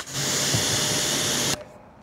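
Pressure-washer gun spraying a jet of water at a foamed car wheel: a loud, steady hiss lasting about a second and a half that cuts off suddenly.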